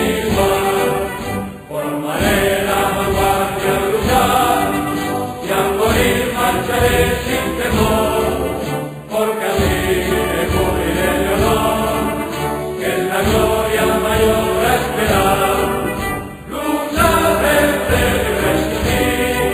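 Music: a choir singing in long, chant-like phrases, with brief pauses between phrases.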